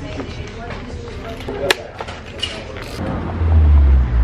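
Clicks and creaks of stiff plastic ski boots being pulled on and buckled, with a sharp click a little under two seconds in. Near the end a loud, deep rumble takes over.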